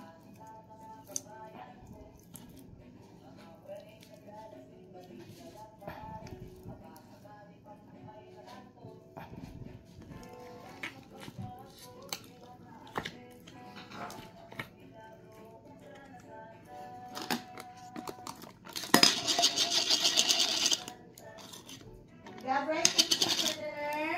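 Glitter slime squelching and crackling as it is squeezed and pressed into its plastic jar, with small clicks, then two loud crackly bursts, about two seconds long, near the end. Faint background music runs underneath.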